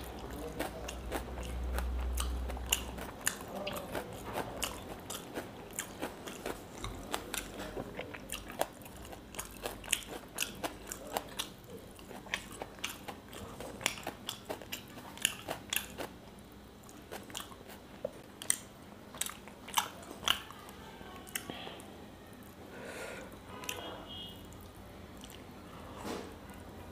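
Close-miked chewing of fried fish eaten by hand, with many sharp mouth clicks and smacks, several a second, thinning out near the end.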